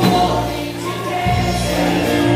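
Live worship music: a group of singers holding sung lines together over keyboard and guitar accompaniment, with a brief softer moment in the middle before the voices and instruments pick up again.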